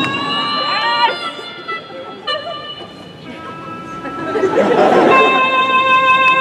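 Electronic keyboard holding sustained notes while the audience cheers and shouts; the crowd noise swells about four seconds in, and a new held chord starts just after five seconds.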